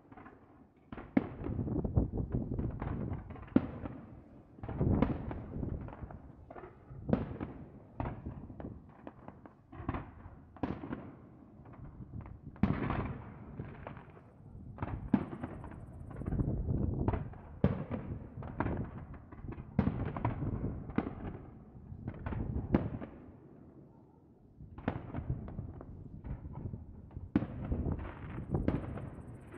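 Fireworks display: aerial shells and fan-shaped cake volleys going off in rapid, overlapping bangs and crackles. They come in waves with short lulls between them.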